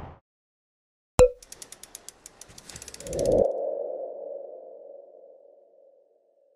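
Logo sting sound effect: a sharp hit, then a quick run of ticks and a swelling whoosh, ending in one held tone that slowly fades away.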